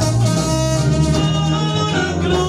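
Live band playing loud, amplified Latin dance music, led by electric guitar over bass and drums.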